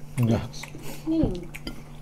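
Light clinks and clatter of cutlery and dishes at a meal table, with two short hummed 'hmm' sounds from a person eating, the second gliding in pitch.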